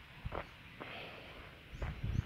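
Faint footsteps of a person walking on a paved road: a few soft, short steps.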